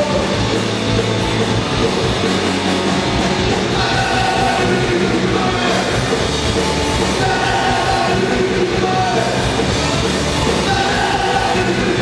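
Live punk rock band playing loud and steady: distorted electric guitar, electric bass and drum kit, recorded in the club room from the audience.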